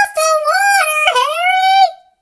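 A loud, very high-pitched, sing-song character voice delivering a drawn-out line of the story in three held phrases, cutting off just before the end.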